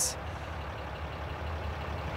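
Steady low rumble of an idling truck engine heard from inside the cab, even throughout with a faint hiss over it.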